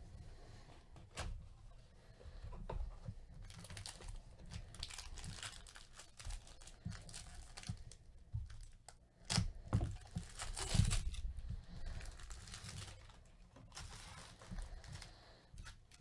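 A trading-card box and its foil pack wrapper being opened by hand: a couple of sharp clicks in the first few seconds, then repeated tearing and crinkling, loudest about nine to eleven seconds in.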